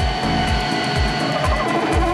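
Background music with a steady deep beat over a steady whine from the glider's electric landing-gear motor as it lowers the gear.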